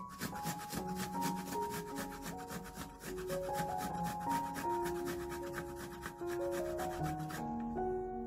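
Fresh ginger root being grated on a metal box grater in quick, regular rasping strokes, about four a second, stopping shortly before the end. Soft background music with sustained notes plays along.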